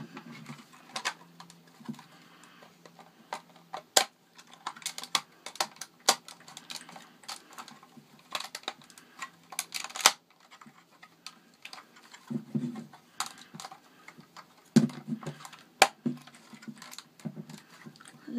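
Lego bricks being pressed together and handled: irregular sharp plastic clicks and taps, with a few duller thumps in the second half.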